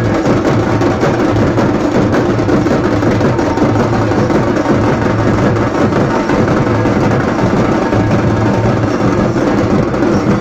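Several large two-headed barrel drums beaten with sticks in dense, unbroken procession drumming, loud throughout.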